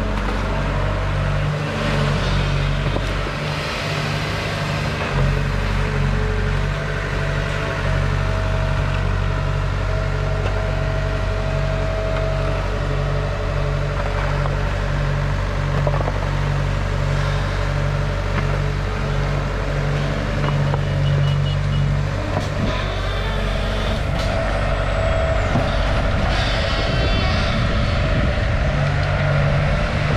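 Sumitomo S265F2 long-reach excavator's diesel engine running steadily under load, a low pulsing hum, with a higher steady whine that comes and goes as the boom and bucket move.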